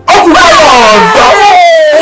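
Several people burst into loud, joyful shouting all at once, with a long, high cry that slides down in pitch.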